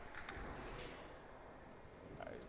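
Faint, steady background noise of a sports hall, with a few soft ticks in the first second.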